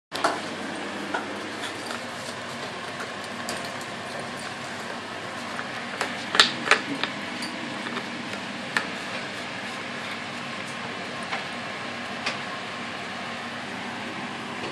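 A Shih Tzu licking and nosing a small plastic cream cheese tub across a tile floor: scattered sharp clicks and knocks, the loudest cluster about six and a half seconds in, over a steady background hiss.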